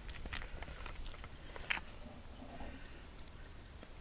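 A hoof pick scraping and picking packed mud and dirt out of the sole of a horse's unshod hind hoof: faint, irregular scratches and clicks.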